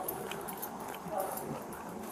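Faint footsteps and indistinct distant voices picked up by a body-worn camera microphone, with a brief faint voiced sound about a second in.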